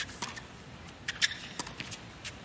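Tennis rally on a hard court: a run of sharp pops from racket strikes and ball bounces, the loudest about a second and a quarter in.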